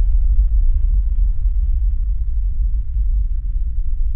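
Deep synthesized drone with a steady, heavy low rumble. Over it, a group of thin tones glides slowly downward in pitch.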